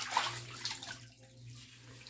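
Bathwater splashing and trickling in a bathtub as a bath puff is worked over the shoulder, a few splashes early on fading to a quieter trickle.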